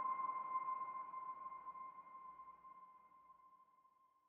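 A single ringing electronic tone with a fainter higher overtone, fading out slowly and almost gone by the end: the tail of an end-screen sound effect.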